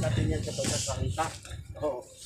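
People talking indistinctly, with a short hiss about half a second in.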